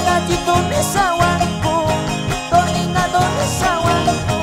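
Live band music: an instrumental passage in which a lead melody with sliding notes plays over a steady beat.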